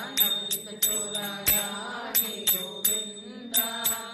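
Devotional chant music: a voice chanting over a steady drone, with bell-like metallic percussion struck about three times a second in short runs.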